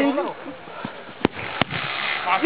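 A football kicked on a sand pitch: two short thuds about a third of a second apart, a little over a second in, after a man's shout at the start.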